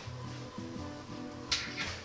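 Background music: a soft acoustic guitar instrumental with held notes over a steady bass. A brief hiss about one and a half seconds in.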